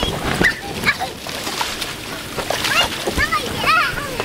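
Water spraying and splashing on an inflatable water slide, a steady wash with a few knocks. Short high-pitched yelps come in near the end.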